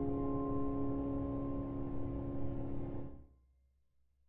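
A final chord on a keyboard piano, held and ringing steadily as the closing chord of a song, then stopping about three seconds in.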